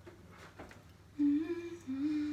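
A girl humming a long held note that starts about a second in and steps slightly down in pitch partway through.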